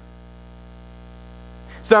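Steady electrical mains hum with a stack of even overtones, heard plainly in a pause between sentences; a man's voice starts again near the end.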